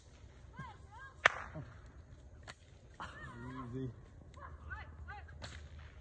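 Bullwhip cracking: several sharp cracks, the loudest a little over a second in and others about midway and near the end. Fainter animal or voice calls sound between the cracks.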